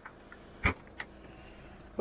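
Car boot latch released by hand: one sharp click about two-thirds of a second in, then a lighter click about a second in as the boot lid comes free.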